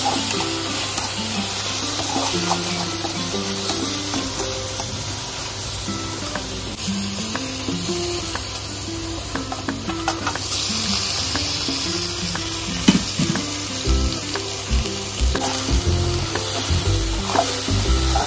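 Onions and spices sizzling in hot oil in a wok while a metal spatula stirs them. About ten seconds in, raw pork pieces are tipped into the pan and the sizzle grows louder, and from about fourteen seconds in the spatula knocks and scrapes against the pan as the pork is stirred.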